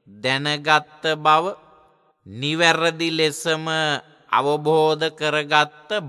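A Buddhist monk's voice chanting a verse at a steady, level pitch, in three phrases with short pauses between them.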